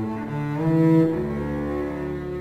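Four double basses playing bowed together in a suite for double bass quartet: held notes in several parts moving from chord to chord, swelling to their loudest about a second in.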